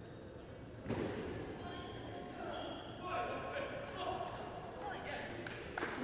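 Table tennis rally: the plastic ball clicking off the rackets and bouncing on the table.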